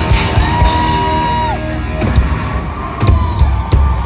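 Live hard rock band playing, with drums hitting hard and a held high note that bends downward about a second and a half in.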